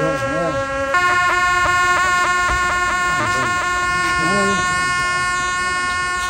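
Tibetan ceremonial horns playing long held notes. The pitch steps up about a second in, and the notes then carry quick ornamental flicks. People talk underneath.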